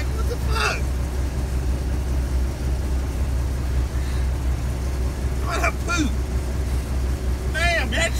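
Semi truck's diesel engine idling, a steady low rumble, with short bursts of voice about half a second in and again near six seconds.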